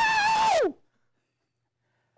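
A man's loud, high-pitched "Woo!" cheer of excitement, held for most of a second and falling in pitch at the end.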